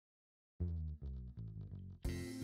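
Dead silence, then background music with guitar and bass comes in about half a second in.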